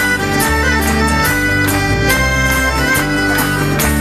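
Live rock band playing a song: drums keep a steady beat under guitars and long held chords from an accordion.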